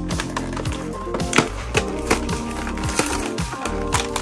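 Cardboard toy box opened at the bottom end and its plastic insert pulled out: scattered clicks, taps and crinkles of card and plastic, over steady background music.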